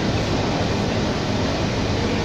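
Steady cabin noise of a 2004 New Flyer D40LF diesel city bus under way, its engine and road noise heard from inside the passenger cabin as an even rumble and hiss.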